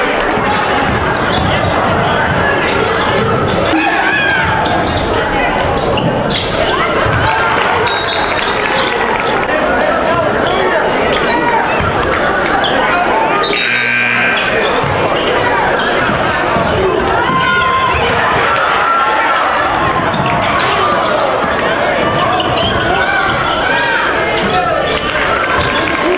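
Basketball game sound in a gym: a ball dribbling on a hardwood court among crowd chatter and shouting voices, with a short break about halfway through.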